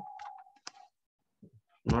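A single sharp click about two-thirds of a second in, in a short lull between words.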